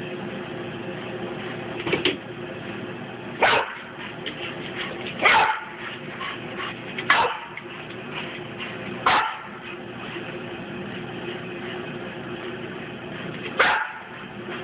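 A dog barking, six short barks about two seconds apart, with a longer pause before the last one.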